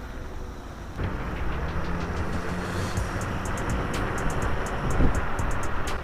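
Wind rushing over the microphone and road rumble from an electric scooter riding at speed, louder from about a second in.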